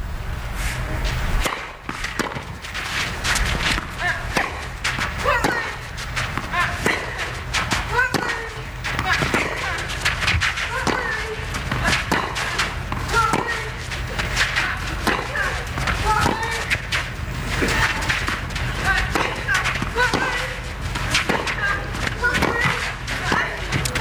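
A long tennis rally: racket strings striking the ball again and again at irregular intervals, with short voiced grunts on some shots.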